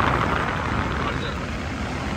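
Steady low rumble and hiss of a car cabin's background noise.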